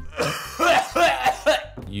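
A young man coughing about four times in quick succession right after exhaling a lungful of e-cigarette vapor.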